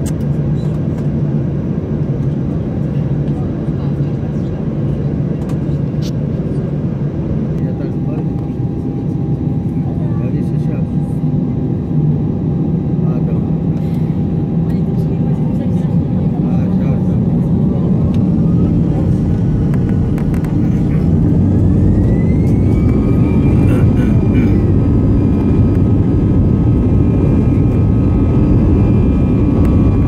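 Airbus A319's CFM56 jet engines heard from inside the cabin, running with a steady low hum, then spooling up for takeoff. From about halfway through, a whine rises in pitch and the sound grows louder, then holds at a steady higher tone a few seconds later.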